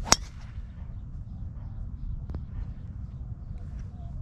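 A golf driver striking a ball off the tee: one sharp metallic crack with a brief ring, right at the start. A steady low rumble lies under it.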